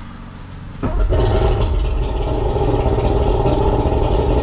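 Mercury 135 hp outboard engine starting about a second in, after its fuel system was primed by hand, then running steadily. It is running on a garden-hose flusher, out of the water.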